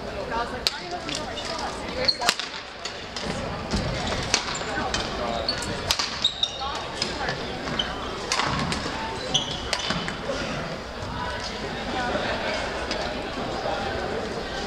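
Badminton rackets hitting shuttlecocks in sharp, irregular cracks from play on several courts, with shoes squeaking on the hardwood floor, over a murmur of voices echoing in a large gym.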